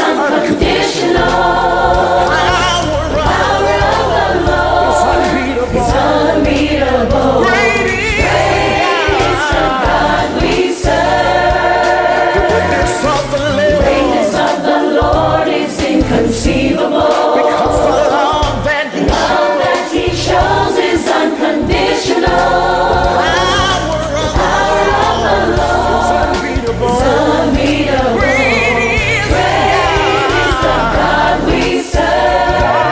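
Gospel choir singing in layered harmony with instrumental accompaniment and a steady bass line underneath.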